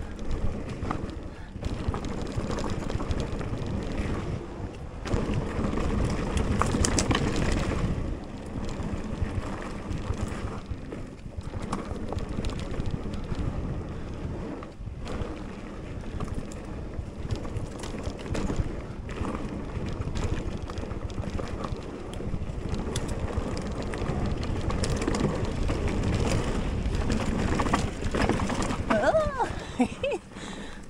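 Mountain bike rolling along a dirt singletrack: steady tyre and trail noise that rises and falls with the terrain, with wind on the microphone.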